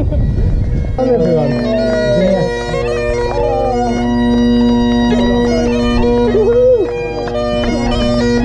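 Great Highland bagpipes playing a tune over their steady drones, starting about a second in. Before the pipes come in there is a low rumble of wind on the microphone.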